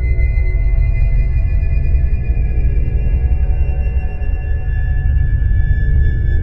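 Dark horror-film score: a deep, steady rumble under several long, sustained high ringing tones, with no beat.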